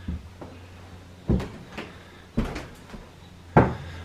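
Footsteps on a wooden plank floor: five or six thumps spaced roughly half a second to a second apart, the last the loudest, over a low steady hum.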